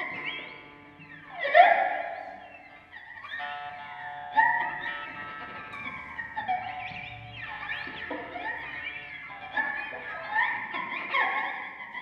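Electric guitar played through effects: held, overlapping notes with swooping pitch glides, new notes swelling in every second or two.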